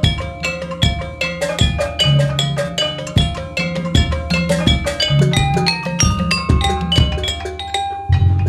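Javanese gamelan playing: bonang kettle gongs struck in a quick, running pattern of ringing metallic notes, several a second, over steady low drum strokes coming a little more often than once a second.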